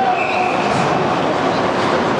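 Steady ice-rink din during hockey play: skates scraping the ice and a murmur from the stands, with a short high tone about a quarter second in.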